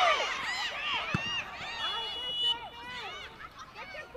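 Players' voices crying out and shouting in short sharp calls as a late tackle goes in, loudest at first and dying away. A short referee's whistle blast sounds about two seconds in, calling the foul.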